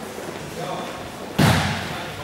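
A futsal ball struck hard once, a sharp thud about one and a half seconds in that echoes around the hall. Faint shouting voices come before it.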